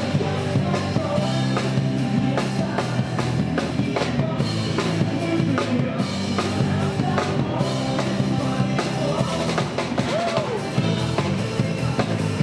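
Live rock band playing in the street: electric guitars over a drum kit keeping a steady, driving beat.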